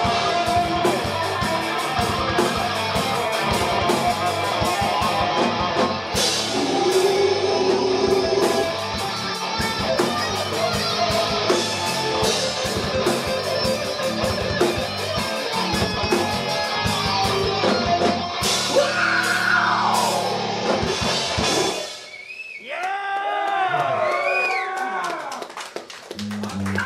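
Live rock band playing loud: distorted electric guitars over a drum kit. The full band stops about 22 seconds in, leaving a few seconds of wavering, sliding tones.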